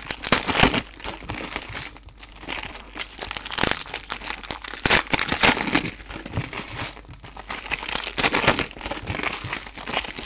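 Silver foil trading-card pack wrappers crinkling and crumpling in the hands, in irregular bursts.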